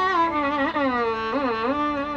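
Carnatic violin playing a melodic phrase in which the notes slide and bend up and down in constant ornaments, over a steady drone note.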